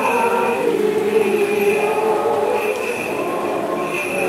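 Choir and congregation singing a Greek Orthodox Holy Friday hymn together, voices holding long, slow notes.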